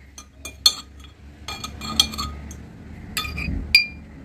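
A hard object clinking against glass: a string of sharp taps, each with a short bright ring, the loudest about two-thirds of a second in, at two seconds and just before the end.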